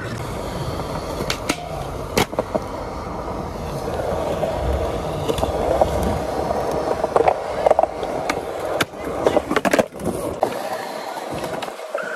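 Skateboard wheels rolling on smooth concrete, a steady rumble broken by sharp clacks of the board and trucks, with a metal rail grind early on. The rolling rumble cuts out shortly before the end as the board leaves the ground for an ollie.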